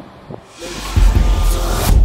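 Outro music comes in about half a second in: a rising swell over deep bass that climbs to a peak near the end.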